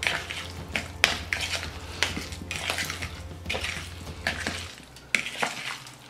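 A metal fork stirring and folding chopped vegetables into mashed avocado in a bowl: irregular scraping clicks of the fork against the bowl, several a second.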